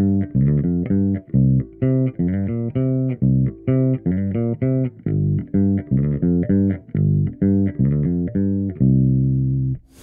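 Gibson ES-Les Paul bass played on its bridge pickup through a Trace Elliot Elf 200-watt bass head and 1x10 cabinet, with the gain at its 9 o'clock setting adding a little grit, heard as a mix of microphone and direct signal. A quick run of plucked notes ends on one longer held note near the end.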